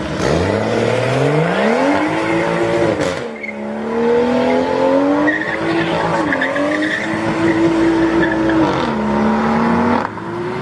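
BMW 2 Series coupé pulling away hard with its rear tyres spinning and squealing in a burnout. The engine revs climb steeply, dip about three seconds in, climb again and hold high, then fall away just before the end.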